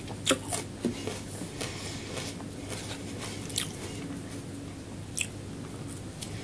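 Close-miked eating sounds of a person chewing soft food, with several sharp, wet mouth clicks and smacks scattered through it, the loudest about a third of a second in.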